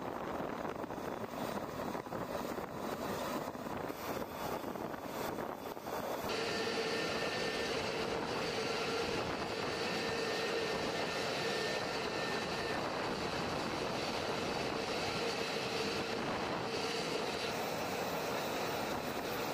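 F-35A jet running on the ground: a steady rushing noise with a turbine whine held on several high tones. The sound changes abruptly about six seconds in, and the whine becomes clearer after that.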